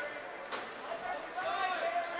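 Indistinct voices of people talking and calling out across an ice rink during a stoppage in play, with a single sharp knock about half a second in.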